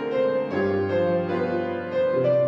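Piano played live: sustained chords with a melody line over them, and a new chord with deep bass notes struck about half a second in.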